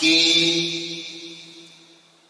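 A man's voice through a PA system: one drawn-out, chant-like syllable at a steady pitch that starts suddenly and fades away smoothly over about two seconds, with a long echo tail.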